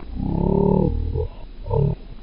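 A person's voice, close and loud: one drawn-out vocal sound of about a second, wavering in pitch, then a shorter one near the end.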